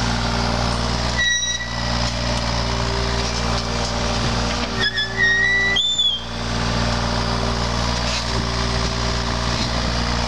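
John Deere 35G compact excavator's diesel engine running steadily under digging load as the bucket scoops sand. Short high-pitched squeals come about a second in and again around five to six seconds in.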